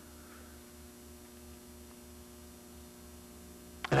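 Steady electrical mains hum carried on the recording during a pause in speech, with a man's voice starting again right at the end.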